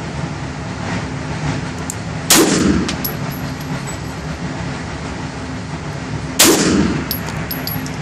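Two shots from a Beretta 92 FS 9 mm pistol, about four seconds apart, each echoing briefly in an indoor range. A light metallic tinkle follows each shot, over a steady background hum.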